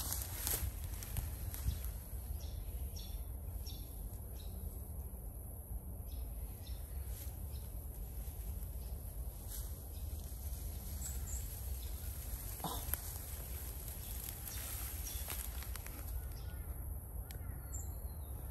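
Outdoor ambience dominated by a steady low rumble of wind on the microphone, with a few faint rustles and light knocks from movement in long dry grass.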